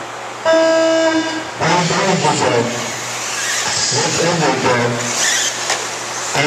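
A single electronic start tone, a steady beep lasting about a second, sounds about half a second in. It is the race timing system's signal to start the RC qualifying heat.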